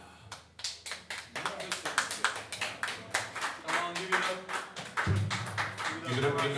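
A small audience clapping just after a song ends: a dense, uneven patter of separate hand claps that starts about half a second in, with a few voices among it.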